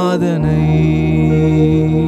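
A man singing a slow Tamil worship song over sustained keyboard chords, with a short break in the sound just after the start before the held chord comes back in.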